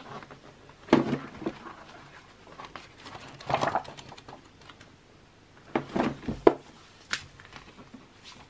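Pages of a photobook being flipped through by hand: a few separate papery rustles and sharp flicks.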